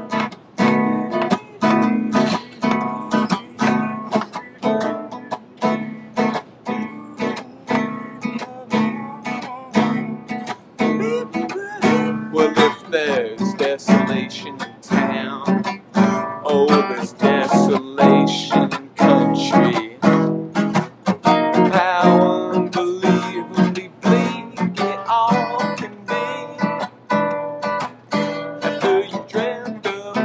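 Acoustic guitar strummed in a steady, even rhythm, chords ringing between the strokes.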